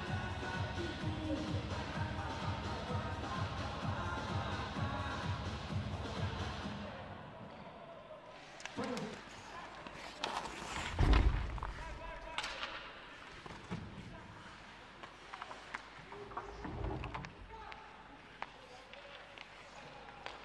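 Background music with a steady beat, fading out about seven seconds in. Then live ice hockey play: scattered stick and puck knocks, with one loud thud about eleven seconds in.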